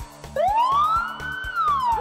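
Police car siren sound effect: one wail that rises for about a second and then falls, over background music with a steady beat.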